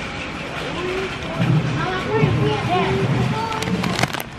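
Indistinct voices talking over a steady supermarket background hum. Near the end come a few short, sharp clicks as a plastic pouch of cocoa powder is grabbed from the shelf.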